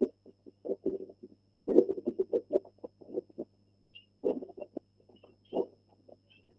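Footsteps crunching on a gritty park path, coming in irregular clusters about once a second, heard thinly through shared video-call audio.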